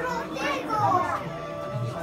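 Children's voices and chatter over background music.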